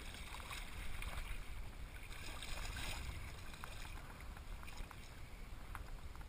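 Shallow sea water lapping and sloshing around a camera held at the surface, with scattered small splashes and drips and a steady low rumble on the microphone.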